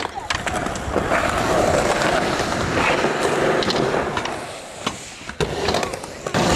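Skateboard wheels rolling on concrete with a steady gritty rumble, broken by a few sharp clacks of a board, the loudest about five seconds in.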